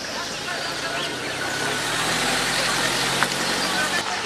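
A pickup truck's engine idling, a steady low hum, under a wash of outdoor background noise that grows a little louder partway through.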